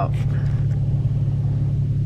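Steady low rumble inside a parked car's cabin, of the kind a car engine makes at idle.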